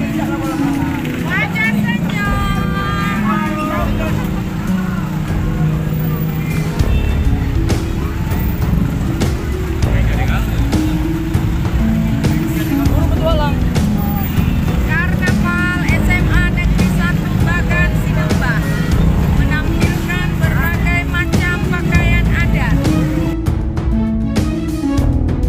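Busy street-parade noise: voices and music mixed over a steady low rumble of vehicle engines, the rumble heavier from about seven seconds in.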